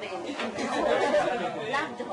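Speech only: several people talking over one another in a room.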